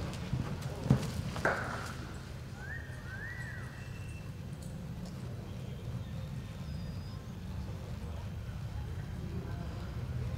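A ridden horse's hooves on arena dirt as it slows to a walk and stands, over a steady low rumble. There are a few sharp knocks in the first second and a half, the loudest about a second in.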